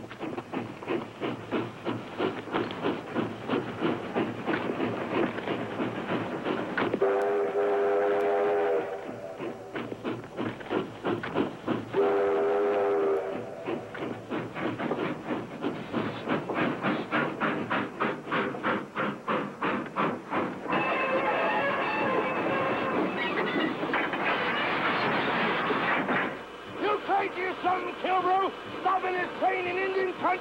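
Steam locomotive under way, its exhaust chuffing in a fast, steady rhythm. The whistle blows twice in long blasts, about a quarter of the way and about two-fifths of the way in. A higher, shrill held sound follows near two-thirds of the way.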